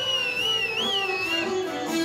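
Balkan brass band music: a high wavering melody line with a quick upward turn about halfway through, over held lower notes.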